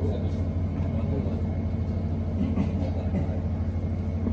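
A steady low rumble or hum underneath, with faint voices in the background.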